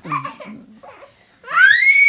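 A short laugh, then from about one and a half seconds in a child's loud, shrill scream that rises in pitch and then holds, during rough play on a bed.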